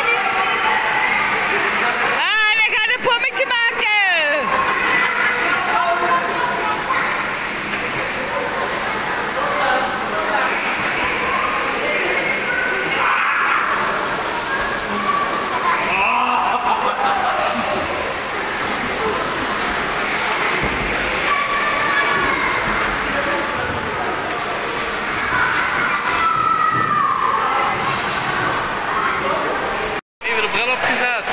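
Indoor swimming pool sounds: water sloshing and splashing, with the babble of swimmers' voices in the pool hall.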